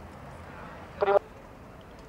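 A man's voice amplified by a megaphone: a single word about a second in that cuts off abruptly, over steady faint outdoor background noise.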